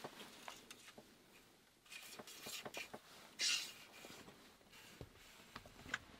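Quiet handling noises: soft rustling of clothing and a few small clicks and taps as arrows and gear are handled in a cramped space, with a brief louder rustle about three and a half seconds in.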